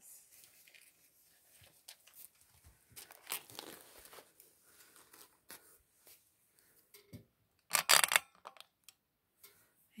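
Plastic packaging and paper items rustling and crinkling as they are handled and laid down. There is a louder crinkle about eight seconds in.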